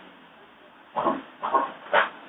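A man's voice making short murmured, hemming sounds, three brief bursts starting about a second in after a quiet pause.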